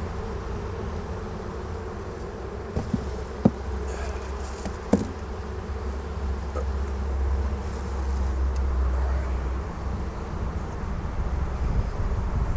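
A colony of Sicilian honeybees (Sicula) in an opened hive, humming with a restless, howling roar. The beekeeper takes this sound as a sign that the colony is queenless. A few short wooden knocks come between about three and five seconds in, as a comb frame is worked loose.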